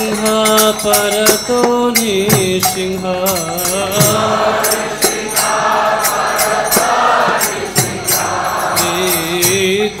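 Devotional temple chanting: a single voice sings a melody line, then from about four seconds in a crowd of voices sings together. Hand cymbals keep an even beat throughout.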